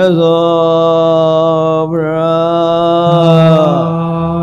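A Buddhist monk's voice chanting in two long held phrases, each about two seconds, the pitch sliding briefly at the start of each.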